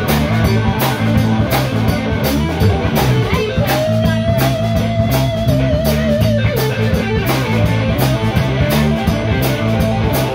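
Live blues-rock trio: electric guitar soloing over bass guitar and drum kit. About three and a half seconds in, the guitar slides up into a long held note with vibrato, letting it go about three seconds later.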